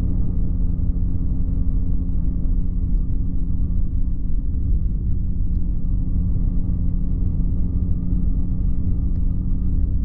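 Flexwing microlight's engine and propeller running steadily in cruise, a constant drone heard from the open cockpit with a low rumble of wind buffeting underneath.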